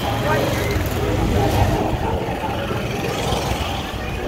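Small engine of a motor tricycle running close by, growing weaker as it moves off, with street voices in the background.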